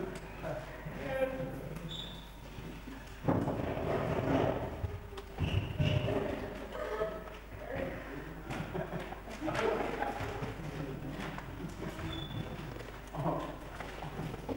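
Indistinct voices talking in a large, echoing hall, with a few thumps, the sharpest about three seconds in.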